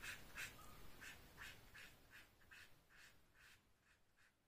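Felt-tip marker colouring on paper: faint, quick scratchy strokes, about four or five a second, growing fainter toward near silence.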